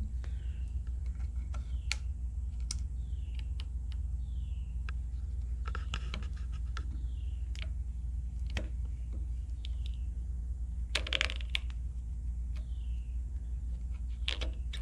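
A pick tool prying and scraping hot glue off the aluminum housing of a Cummins VGT turbo actuator: scattered light clicks and scrapes with a few faint short squeaks, and a louder scrape about eleven seconds in, over a steady low hum.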